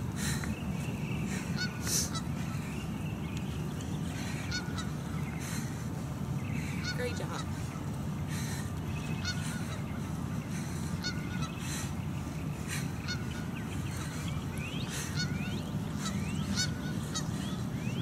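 Short bird calls repeating on and off over a steady low rumble.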